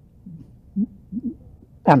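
An elderly man's voice: a few short, low hums and murmurs as he hesitates mid-sentence, then he starts speaking again near the end.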